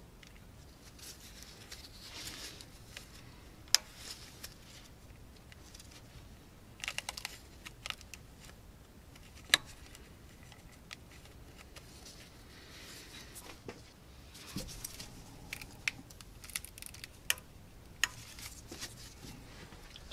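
Faint rustling and scattered clicks of gloved hands working at the plastic coil-pack connector clips on a small three-cylinder engine, with two sharper single clicks, one about four seconds in and one near the middle.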